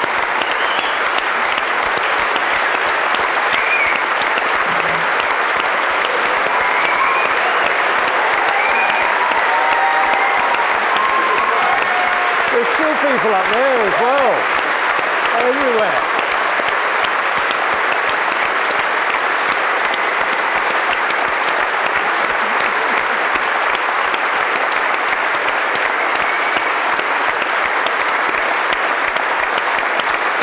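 Sustained applause from a large theatre audience, dense and steady throughout. A few voices rise briefly over it near the start and again around the middle.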